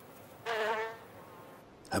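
A sand wasp buzzing once, briefly and with a slightly wavering pitch, as she works at the entrance of her burrow to seal it.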